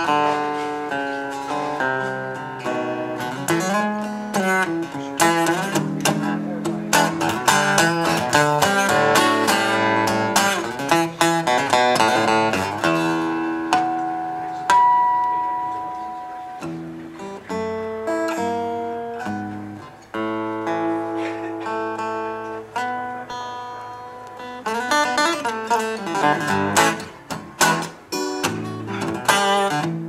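Solo cutaway acoustic guitar playing a blues instrumental, picked single-note lines and chords. The playing slows to a few long-held notes about halfway through, then quickens into fast, busy picking in the last few seconds.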